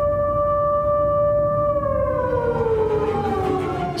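Air-raid siren holding a steady wail, then winding down slowly in pitch through the second half, over low background noise.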